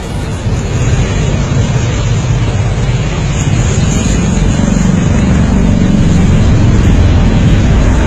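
Loud, steady roar of an aircraft engine that swells over several seconds and stops suddenly right at the end.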